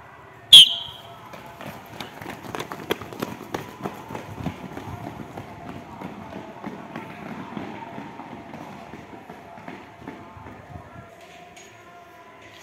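A short, sharp, high-pitched whistle blast starts a sprint. A group of boys' running footsteps on brick paving follows, busiest in the first few seconds and then growing fainter as they run off.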